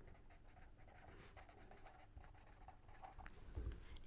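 Pen writing on paper: faint scratching in short, irregular strokes as a line of handwriting is written.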